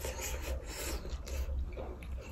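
Close-miked chewing of a mouthful of rice and curry: a quick, irregular series of short noisy mouth sounds over a low steady hum.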